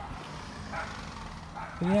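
Faint, steady outdoor background noise with no distinct event. A man's voice begins near the end.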